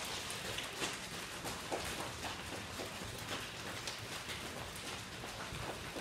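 A group of people slapping their thighs with open hands, unsynchronised: a dense, uneven stream of light slaps.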